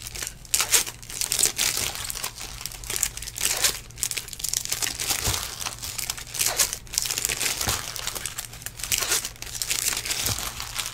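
Trading-card pack wrappers being torn open and crinkled by hand: a busy, irregular run of crinkles and rips.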